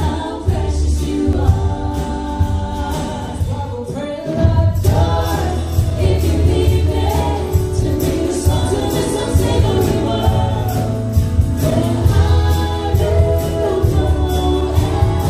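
Live Christian pop band playing a song with vocals over guitars, bass, drums and keyboard. About four seconds in the music breaks off and a different song starts.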